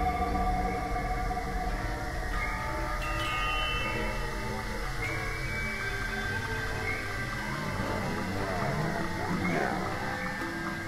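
Live-coded experimental electronic music from TidalCycles: many overlapping held tones with chime-like sampled sounds, and a few wavering, sliding tones near the end.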